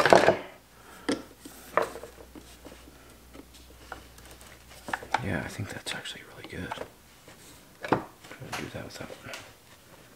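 A metal hand tool clicking and scraping against a chainsaw's plastic handle housing as it pries at tight rubber vibration-mount plugs. There are a few sharp clinks and knocks, one right at the start, others about a second in and near eight seconds.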